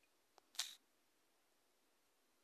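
A single short, sharp click-like burst about half a second in, with a faint tick just before it; near silence otherwise.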